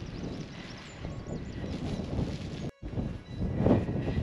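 Strong gusty wind buffeting the microphone outdoors in a storm, a steady low rumble. It breaks off for a moment near the end.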